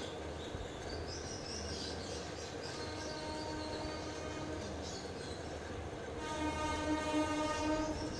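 A steady horn-like tone with a rich, buzzy pitch sounds faintly from about three seconds in and grows clearly louder for the last two seconds. High chirps are heard in the first half.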